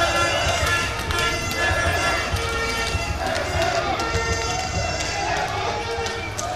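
Parade crowd in the street: many people's voices talking and calling over each other, with music in the background and a low, uneven rumble underneath.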